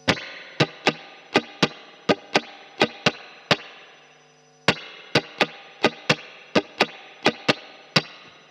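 Electric guitar (Fender Stratocaster through a Fender H.O.T. amp) strummed in a rhythmic pattern of quick, sharp strokes, the fretted G string ringing with the open B and E strings. The strokes come in paired accents; the strumming pauses about three and a half seconds in and starts again about a second later.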